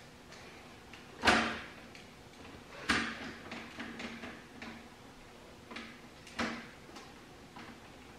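Gear shift lever of an LS XR3135 tractor's synchro-shuttle transmission being worked into neutral, giving sharp metallic clunks: the loudest about a second in, another near three seconds, then a few softer clicks.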